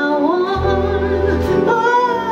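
Live big band music: saxophones, piano and bass accompanying a woman singing.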